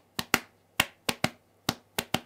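Short, sharp percussive clicks tapping out a swung ride-cymbal pattern with a triplet feel, about seven strokes in an uneven long-short rhythm.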